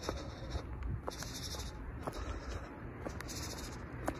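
Sneaker footsteps on a concrete sidewalk, about one step a second, with a high squeak from the Nike Air Monarch shoes' air cushioning recurring every two seconds or so.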